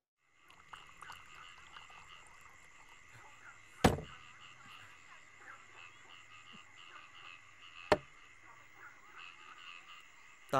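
Faint steady night chorus of frogs and insects, with high continuous trilling and repeated chirps. Two sharp knocks about four seconds apart stand out over it.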